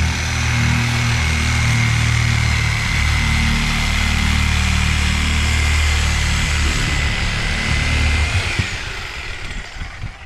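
Electric reciprocating saw (Sawzall) with a long blade running steadily as it cuts through the thick rubber sidewall of a large tractor tire, a thin high whine over a low motor drone; it winds down near the end.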